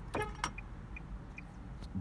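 Steady low rumble inside a parked Nissan car's cabin, with a short pitched sound near the start.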